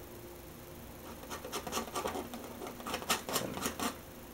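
A steel palette knife scraping and tapping as it picks up thick oil paint and dabs and drags it onto the canvas. An irregular run of small scrapes and clicks starts about a second in, with a few sharper taps near the end.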